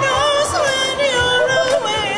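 A woman singing into a microphone over music with a steady beat, her voice sliding between notes.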